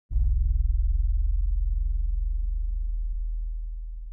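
A deep, low boom sound effect with a brief bright hit at the start that fades slowly over about four and a half seconds, throbbing slightly as it dies away.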